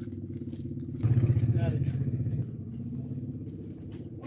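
An engine running, loudest for about a second and a half from about a second in, then easing off; a voice is heard briefly over it.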